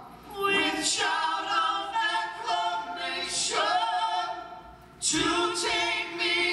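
Several voices singing a slow gospel hymn in long, held phrases with vibrato and little or no instrumental backing. Each phrase swells and fades, with a brief break between phrases about five seconds in before the next one comes in loudly.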